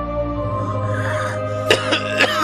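Soft background music with long held tones, and near the end a man coughs sharply.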